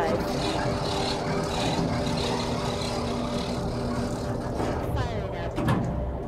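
A steady, engine-like rumble with a held low hum runs through, and voices too faint to make out sit under it. Near the end a few brief voice-like sounds rise and fall in pitch.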